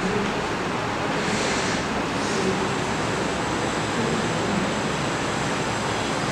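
Steady, even hiss of classroom room noise with a faint low hum, typical of an air conditioner running.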